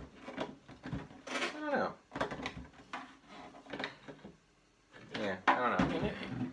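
Plastic Black Series Darth Vader helmet and its display stand being handled on a tabletop: a string of light knocks, taps and rattles.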